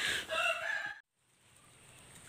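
Rooster crowing, cut off abruptly about a second in, followed by a faint steady high-pitched tone.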